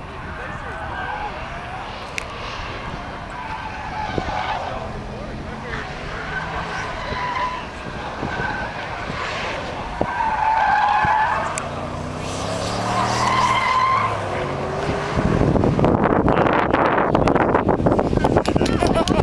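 Two Porsche twin-turbo V8s, a Cayenne Turbo and a Panamera Turbo, accelerating flat out down a runway in a drag race. Their engines rise in pitch and grow steadily louder as the cars close in, then a loud rushing noise takes over for the last few seconds.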